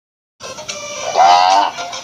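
Background music starts about half a second in, and a cow's moo sound effect sounds loudly over it about a second in, lasting about half a second.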